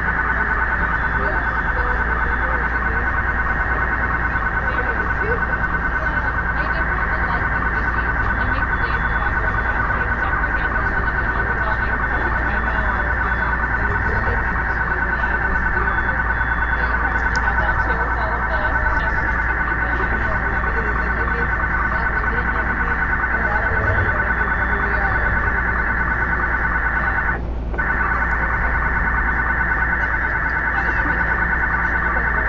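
Subway car telemetry data signal leaking into the passenger PA speakers: a loud, steady electronic noise of many stacked tones with a fast chattering texture, broken only by a brief dropout near the end. The data line has been wrongly routed onto the customer audio line.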